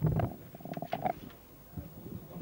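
Movement and handling noise: a loud low thump at the start, then a few short squeaky scrapes about a second in.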